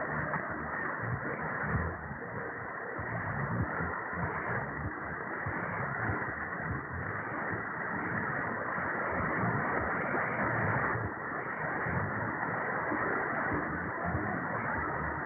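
Shortwave AM reception through a Perseus receiver tuned to 7235.6 kHz: a steady, muffled rush of static and crackle with no highs, and the weak station's programme buried in the noise.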